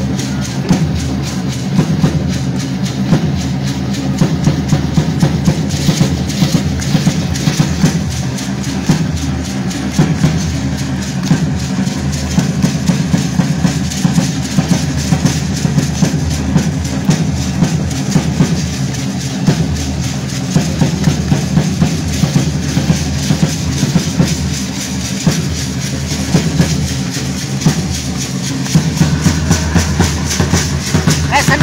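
Bass drums and snare drum of a street danza ensemble beating a fast, steady rhythm for the dancers.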